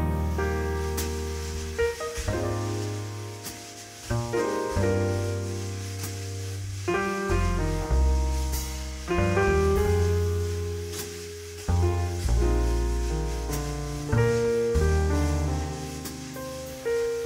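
Jazz piano trio playing a slow ballad: a Steinway grand piano sounds sustained chords over long, deep bass notes, with a few light cymbal touches.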